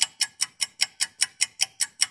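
Rapid, evenly spaced clock-like ticking, about five crisp ticks a second, set against dead silence.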